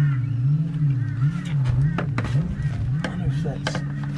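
Clicks and light knocks of hands handling an aluminium awning arm and its fittings, over a continuous low hum whose pitch wobbles up and down over and over.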